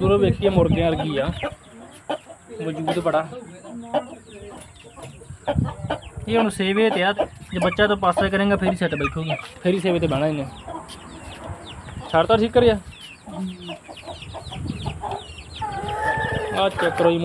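Aseel chickens clucking and calling, a string of short calls with brief pauses between them.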